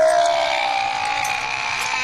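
Soundtrack of a film excerpt: a steady drone of a few held tones over a hiss, the lowest tone sinking slightly in pitch.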